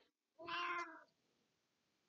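A black-and-white domestic cat meows once, a short, fairly quiet call about half a second in.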